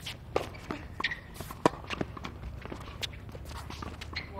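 Tennis ball being struck by racquets and bouncing on a hard court: a string of sharp, irregularly spaced pops, the loudest about one and a half seconds in, with footsteps on the court.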